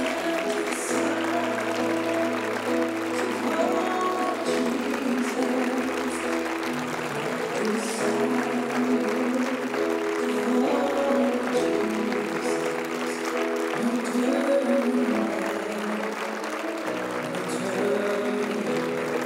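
Slow instrumental worship music on keyboard: long held chords over a bass note that changes every few seconds, with applause from the congregation mixed in.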